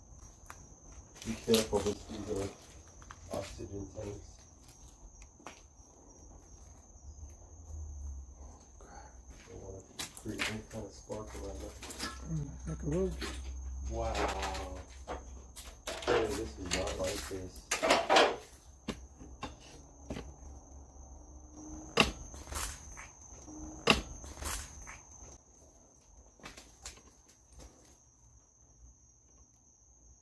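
Crickets chirring in one steady high tone, under footsteps crunching and sharp knocks on scattered debris, the loudest about two seconds in and several more in the second half.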